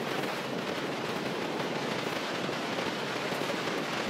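Steady rushing noise of Niagara's American Falls, falling water and spray heard from the river below.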